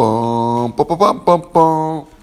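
A man's voice singing in long held notes: one long note, a few short ones, then another long note near the end.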